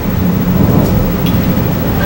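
Steady low rumbling background noise with a faint hum.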